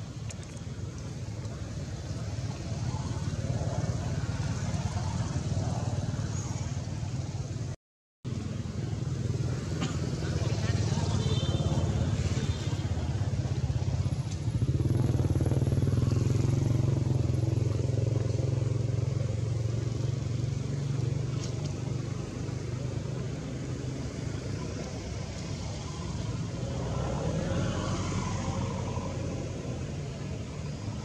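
Low steady rumble of a motor vehicle engine running nearby, loudest in the middle, with faint voices behind it. The sound drops out for a moment about eight seconds in.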